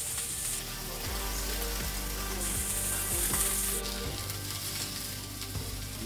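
Pork chops searing in a HexClad hybrid stainless sauté pan: a steady frying sizzle, louder and hissier at the very start and again from about two and a half to four seconds in.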